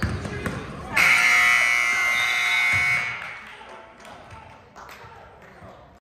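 Gym scoreboard buzzer sounding for about two seconds, starting about a second in, as the game clock runs out to end the period. A basketball bounces on the hardwood floor just before it.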